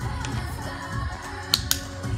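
Background pop music with a melody playing; about a second and a half in, two sharp clicks in quick succession.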